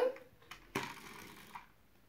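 A click, then a short mechanical whirr from a small toy car's wheels and gears as it is run across a whiteboard.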